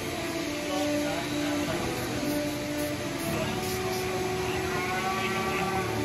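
Steady rushing noise of a livestock blower running in a cattle barn, with voices in the background.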